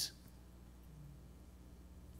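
A pause in speech: quiet room tone with a faint, steady low hum, just after the end of a spoken word.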